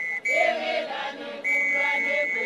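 A women's group singing a traditional Swazi chant in chorus, with a high steady note held for about a second, twice, over the voices.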